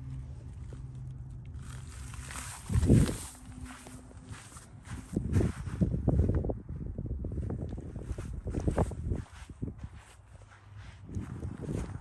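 Footsteps crunching over dry winter grass outdoors, uneven and close to the microphone, with a loud low thump about three seconds in and a faint low steady hum in the first two seconds.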